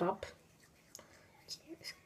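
A woman's voice says a word, then there is a quiet stretch with a few faint, short, soft sounds.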